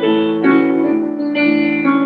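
Grand piano played solo: sustained chords and melody notes, with fresh chords struck about half a second and a second and a half in, ringing on between.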